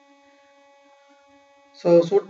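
Faint steady electrical hum made of a few even tones, heard during a pause in the narration. A man's voice starts again near the end.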